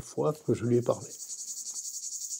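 Crickets chirping: a steady, high-pitched, rapidly pulsing trill that comes in about half a second in, under the last words of a man's voice in the first second.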